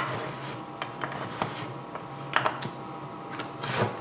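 Metal lid of a can of contact cement being pried open with a flat tool: a handful of scattered light metallic clicks and scrapes, one of the louder ones near the end.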